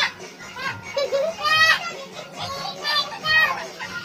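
Young children's high-pitched voices calling out and shouting in bursts while they play.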